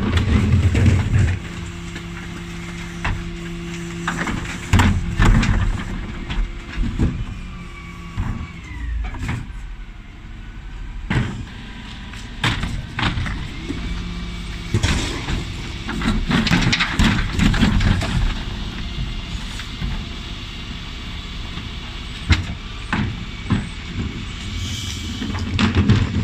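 Rear bin lift of a Dennis Elite 6 refuse lorry with an Olympus body and Terberg OmniDE lift, emptying wheelie bins: its hydraulics running with a steady hum while the plastic bins bang and knock repeatedly as they are tipped and shaken out.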